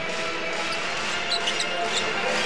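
Basketball game court sound in an arena: steady crowd noise, with a few short, high squeaks of sneakers on the court.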